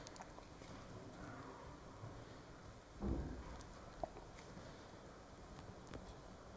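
Quiet handling sounds of liquid silicone being poured from a cup into flat moulds and spread with a wooden mixing stick, with a few faint ticks, a soft low thump about three seconds in and a short click about a second later.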